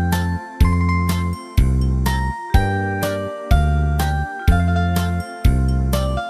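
Instrumental backing track of a Korean trot song: a deep bass beat about once a second, with a chiming, bell-like melody line above it.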